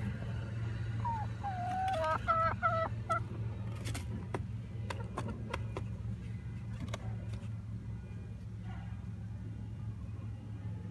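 Backyard hen calling: a drawn-out note about a second in, then a quick run of short, higher clucks, over by about three seconds. A few sharp ticks follow, over a steady low hum.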